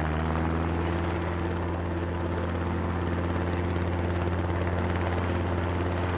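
Steady helicopter-like rotor whirr, a sound effect for a cartoon pony's tail spinning like a propeller as she takes off.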